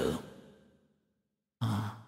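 A man's speaking voice: a word trails off in the hall's echo, then comes a pause of near silence lasting under a second, then his voice starts again near the end.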